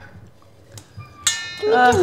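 A utensil clinks against a stainless steel bowl a little past halfway, and the bowl rings briefly with several steady tones before a voice says "uh".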